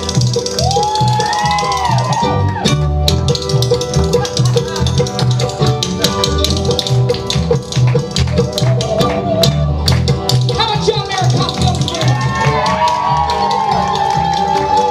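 Live roots band playing an instrumental break: banjo, acoustic guitar, mandolin and upright bass, with a harmonica lead that slides and bends in pitch.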